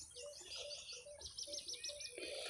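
Faint outdoor birdsong: small birds chirping, with a quick run of about six high notes in the second half, over a row of short, lower calls repeating a few times a second.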